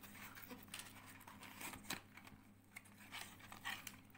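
Faint handling noise of unpacking: a small cardboard box being opened and a plastic-bagged charging cable lifted out, with soft scrapes and a few light clicks.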